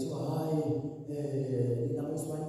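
A man's voice intoning in long, held, chant-like notes, amplified through a microphone.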